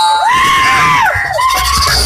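A high-pitched scream from a person at the party: it rises, holds, falls about a second in, then rises and holds again.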